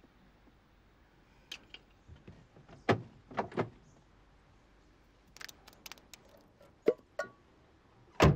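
Scattered clicks and short knocks of handling inside a car's cabin: a few light clicks early, three firmer knocks about three seconds in, a quick cluster of clicks past five seconds, and two more knocks near the end.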